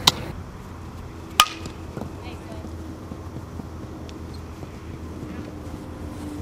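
Two sharp smacks of a softball, about a second and a half apart, the second the louder, over a steady outdoor background.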